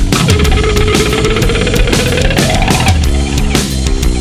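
Loud instrumental heavy rock: electric guitars over drums, with a held lead note that bends up in pitch about two and a half seconds in and drops back shortly after.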